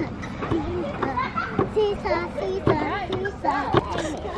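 Young children's high-pitched voices chattering and calling out in playground play, with a few short knocks in between.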